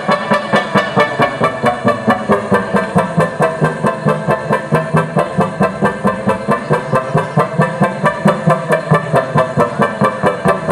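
Live experimental electronic music from synthesizers and controllers played through a PA speaker: a dense droning synth texture that pulses steadily about four times a second.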